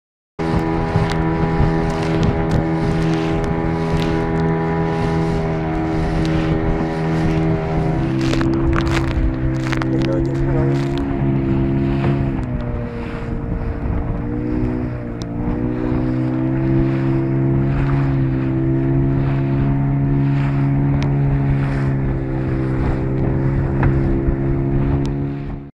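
A small motorboat's engine running steadily under way, with wind and water noise over it. The engine note drops about eight seconds in, wavers a few seconds later, then holds steady again.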